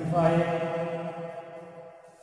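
A man's voice holding one long, steady, chant-like note, which stops just before the end.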